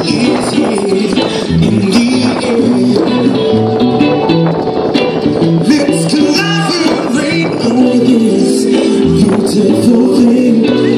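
Live reggae band playing through a large outdoor PA, with a repeating bass line and a steady beat.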